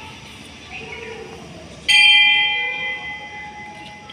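A temple bell struck once about two seconds in, ringing with several clear high tones that fade over about two seconds, over a murmur of voices.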